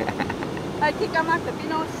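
Voices of people talking in the background, over a steady rush of noise.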